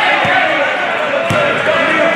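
Basketball dribbled on a gym floor, two thuds about a second apart, under the loud hubbub of a crowd of voices echoing in a gymnasium.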